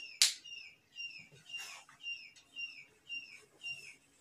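A small bird chirping over and over, a short down-slurred chirp about twice a second. A single sharp click just after the start is the loudest sound.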